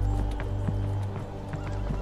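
A horse whinnying over background music, with hooves clip-clopping. The whinny's wavering call comes near the end.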